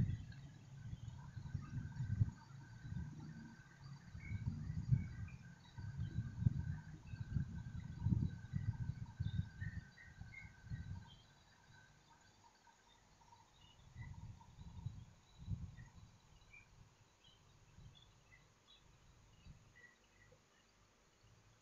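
Faint background ambience: irregular low rumbling and soft bumps for about the first eleven seconds, then quieter, with faint scattered bird chirps throughout.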